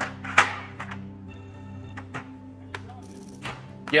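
Sustained background music under a series of sharp clunks and knocks as the Tesla Cybertruck's built-in tailgate loading ramp is pulled out, the loudest clunk coming about half a second in.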